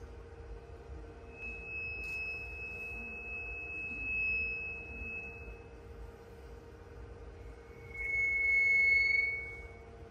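High, pure ringing tones from sound stones: one held for about four seconds, then a second, slightly lower one that starts with a sharp attack near the end, swells and fades. A steady low hum runs underneath.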